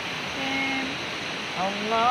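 A single voice chanting a sholawat (Islamic devotional chant) in long held notes: a short faint note about half a second in, then a rising note near the end that slides into a held one. A steady rushing hiss lies underneath.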